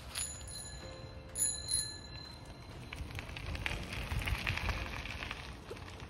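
Bicycle handlebar bell rung twice, about a second apart, each ring lingering, followed by the low rolling noise of the bicycle passing along a dirt trail. The bell is the signal that someone is coming up ahead.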